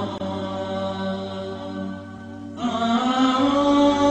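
A voice chanting in long held, slowly gliding notes. It quiets a little before the middle and comes back louder just past halfway.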